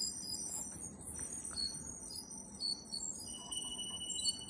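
Strange, scream-like electronic noise from a Lenovo ThinkPad laptop's speakers: scattered short high-pitched beeps and steady thin whistles that sound like chimes, with a lower steady whistle joining a little over three seconds in. It is an audio-output glitch while the laptop is overloaded at around 100% CPU and disk, and muting the laptop stops it.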